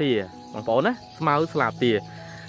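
A man talking in short phrases, with a faint steady tone underneath.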